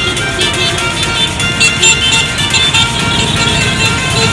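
Music with a steady beat, over the sound of a group of motorcycles and street traffic passing.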